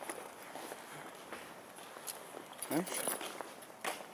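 Footsteps on asphalt, with scattered light ticks and scuffs. A voice says a short "huh?" near the end.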